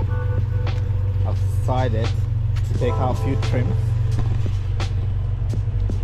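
A steady low mechanical drone runs throughout, with two short snatches of indistinct voices near the middle and a few light clicks.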